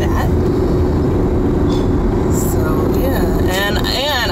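Steady road and engine noise inside a moving car's cabin, a low rumble with a constant hum through it; a voice comes in near the end.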